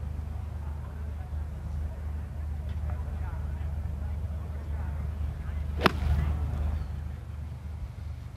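A golf iron strikes the ball out of a sand fairway bunker: one sharp crack about six seconds in, over a steady low outdoor rumble.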